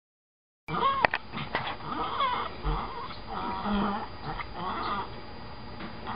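Bichon frise warbling: a run of wavering dog vocalizations that glide up and down in pitch, starting just under a second in.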